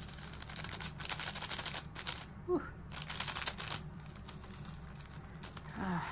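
Resin diamond-painting drills pouring and rattling off a plastic diamond tray: a dense patter of tiny plastic clicks in two spells, the first about two seconds long, the second shorter.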